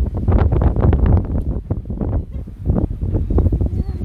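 Wind buffeting a phone's microphone, a heavy continuous rumble, with quick irregular rustling and knocks from the phone being handled.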